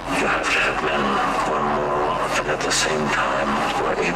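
A spoken voice sample with sound effects in the intro of a hardcore techno track, coming in abruptly and louder than the music before it.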